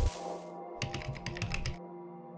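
A quick run of computer-keyboard typing clicks, about a second long, over a held music chord. A hiss of static fades out in the first half-second.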